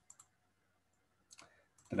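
Computer mouse clicks: a quick pair near the start and another pair about a second later, as menu items are picked.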